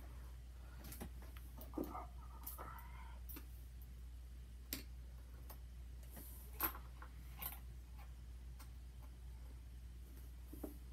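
Handling noise from small parts: a few light clicks and taps of a metal clip, metal straw and plastic spoon against a wooden box, spread out irregularly, the sharpest about two-thirds of the way in.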